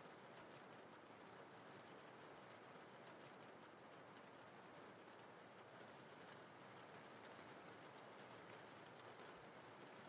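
Faint, steady rain-sound background, close to silence.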